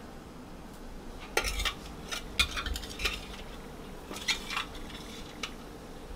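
Steel spoon clinking and scraping against a steel plate and a metal saucepan as chopped lemongrass is spooned into boiling water: a run of short, uneven clinks starting about a second and a half in and ending near the end.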